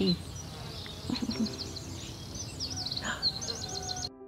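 Small birds chirping and twittering, with a fast run of repeated chirps near the end.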